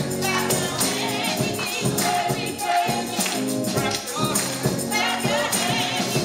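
Gospel praise team singing with organ accompaniment and a tambourine shaken in a steady rhythm.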